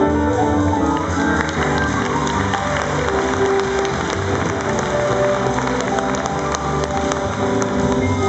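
A jazz ensemble playing live: piano with held notes from other instruments, and a few light clicks or taps in the second half.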